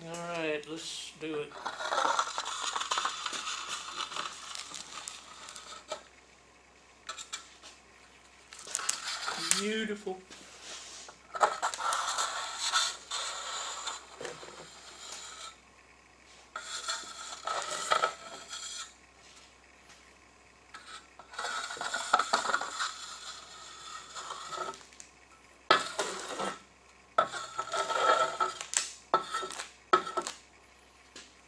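Flat steel trowel scraping and spreading a clear epoxy casting-resin coat across a river-table mold, in several passes of a few seconds each with short pauses between them.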